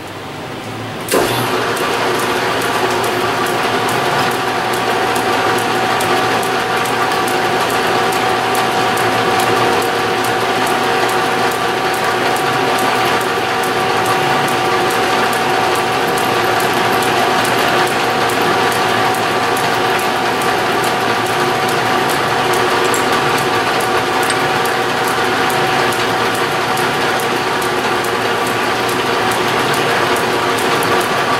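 Hamilton metal lathe switched on about a second in, then running steadily with a geared whine and fine, even clatter as a drill bit in the tailstock chuck bores through a small steel hex-stock part.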